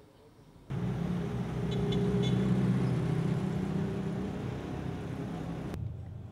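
Road traffic noise with a vehicle engine running close by. It starts suddenly about a second in, swells, and cuts off abruptly near the end.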